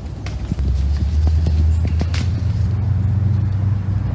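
A low, steady motor hum that grows louder about half a second in and steps up slightly in pitch partway through, with scattered light snaps and rustles of leaves and twigs.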